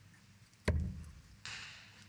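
A steel-tip dart striking a bristle dartboard once, a sharp thud about two-thirds of a second in, as it lands in the treble 20. A faint short hiss follows near the end.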